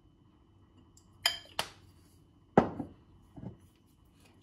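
Glass bottles handled on a kitchen worktop: two light ringing clinks about a second in, then a louder knock as a bottle is set down, and a faint tap near the end.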